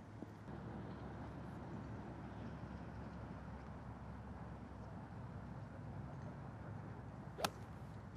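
Golf iron striking a ball off turf: one sharp crack near the end, over steady low outdoor background noise.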